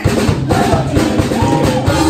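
Live band playing with electric guitar, electric bass, drum kit and keyboards, over a steady drum beat.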